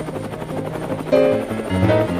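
Bass clarinet and piano playing a low, fast-pulsing passage that evokes a helicopter's rotor, with new sustained notes coming in loudly about a second in.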